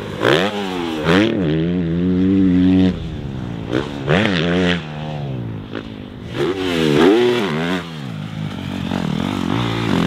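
A Honda CRF motocross bike's single-cylinder four-stroke engine being ridden hard, revving up and dropping off again and again as the throttle opens and closes, with one longer held high run about two to three seconds in.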